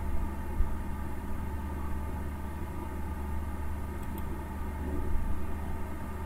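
Steady low hum and rumble of background noise, with no speech.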